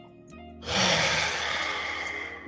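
A long, loud sigh that starts a little over half a second in, over steady background music.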